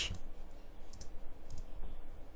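Computer keyboard being typed on, a few irregular keystroke clicks.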